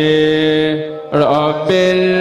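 A man's voice chanting Islamic devotional praise in Arabic, in long, steady held notes. A little past a second in, the note breaks with a quick dip in pitch and then settles onto a new sustained note.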